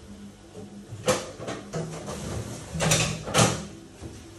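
Freezer door of a fridge-freezer being opened and its drawer pulled out, with a few sharp knocks and rustles about a second in and twice near the end as frozen vegetables are taken out.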